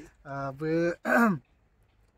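A man's voice in two short utterances, the second falling in pitch, then a brief quiet near the end.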